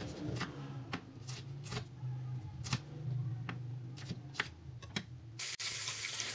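Knife cutting bird's-eye chilies on a wooden cutting board: about ten sharp, irregular taps. Near the end it changes abruptly to the steady sizzle of pieces of tuna frying in oil in a pan.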